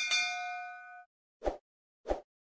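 Notification-bell sound effect as the bell icon is clicked: a click, then a bright metallic ding ringing for about a second before it cuts off sharply. A short pop follows about a second and a half in.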